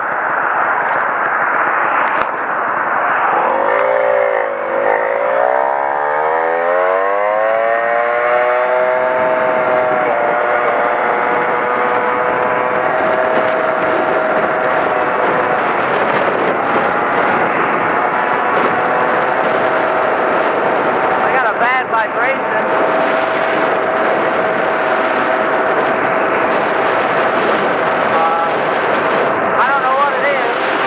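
Honda PA50II Hobbit moped's small two-stroke single-cylinder engine pulling away, its pitch dipping and then climbing over several seconds as it gathers speed before settling into a steady cruising drone, with wind noise rushing over it.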